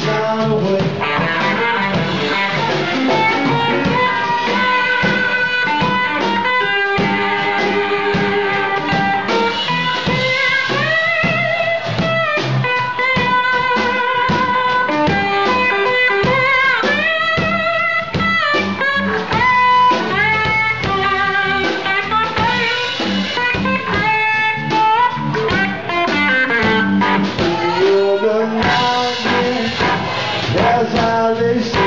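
Live band playing loudly: an electric lead guitar with bent, wavering notes over bass guitar and a drum kit.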